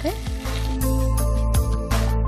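Spine gourd and tomato pieces sizzling as they fry in oil in a pan, with crackles from about a second in, under steady background music.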